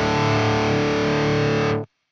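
Les Paul-style electric guitar played through a high-gain distorted amp tone, a held chord ringing over low rhythmic notes. The sound cuts off suddenly near the end.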